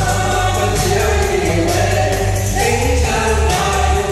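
Singing into microphones, more than one voice, over amplified backing music with a steady low beat.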